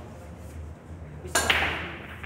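Pool break shot. The cue tip cracks against the cue ball, and a split second later comes a louder crack as the cue ball smashes into the racked balls, followed by the clatter of balls scattering across the table.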